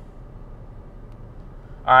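Steady low background hum inside a car's cabin, with no distinct events; a man starts speaking near the end.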